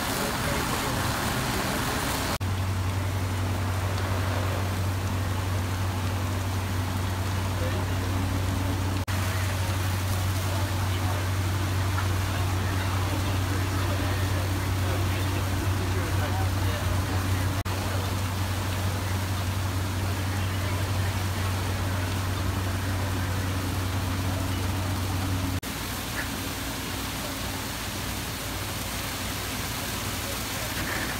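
Fire engine pumps running with a steady low drone under a broad wash of noise from water streams hitting the fire; the drone stops abruptly near the end, leaving the wash.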